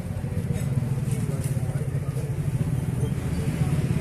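Steady low rumble of a motor vehicle engine running nearby, with faint voices in the background.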